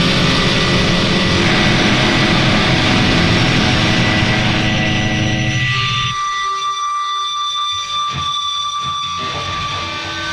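Heavy, distorted doom metal: a dense wall of guitar noise that drops away about six seconds in, leaving a few sustained high tones ringing on.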